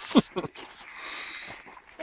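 Glowing campfire embers hissing steadily as snow is heaped on them to put the fire out, the snow melting into steam.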